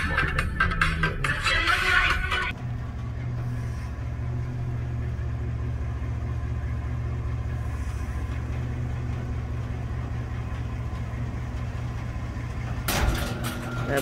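Electronic dance music plays and cuts off suddenly about two and a half seconds in, leaving a steady low hum of a car engine idling, heard from inside the cabin.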